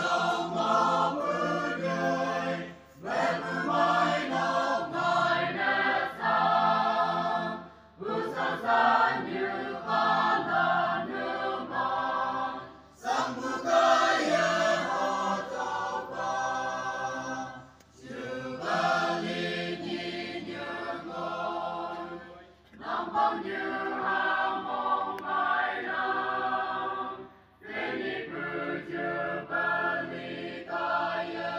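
A choir singing in phrases about five seconds long, each separated by a brief pause.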